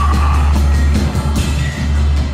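Loud live psychedelic/experimental rock: a heavy, steady low bass drone under dense noisy guitars, with evenly repeated drum strokes and a brief vocal cry early on.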